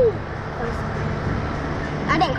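Steady low rumble picked up by the onboard camera of a Slingshot ride capsule as it hangs and moves in the air, with the tail of a short falling vocal sound right at the start.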